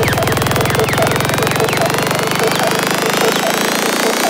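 Psytrance track in a breakdown. The beat has dropped out, and a low bass tone fades away over about three seconds while a short synth blip keeps repeating several times a second under slowly rising high synth sweeps.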